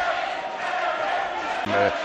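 Boxing arena crowd noise, a steady hum of many voices, with a man's voice starting to speak near the end.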